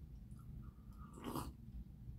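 One short, faint slurp, a sip drawn from a small cup, about a second and a half in.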